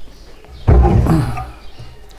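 A man's short wordless vocal sound, rough and low, lasting under a second about a third of the way in.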